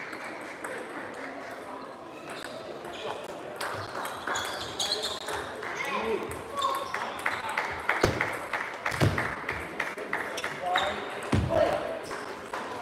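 Table tennis balls clicking off bats and tables, a rally's quick clicks building up in the second half, over a murmur of voices in a sports hall.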